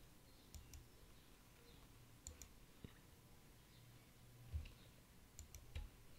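Faint computer-mouse clicks, each a quick double tick of press and release, four times over the stretch, against near silence, with a soft low thump about three-quarters of the way through.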